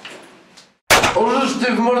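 A single sharp pistol shot about a second in, followed at once by a man crying out in pain and starting to speak.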